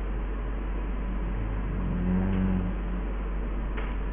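Steady hiss and low electrical hum of a lecture recording's microphone, with a brief low droning tone in the middle.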